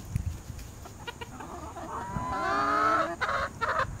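Chickens calling: a drawn-out call of about a second, rising slightly in pitch, about two seconds in, then a few shorter, rougher clucks.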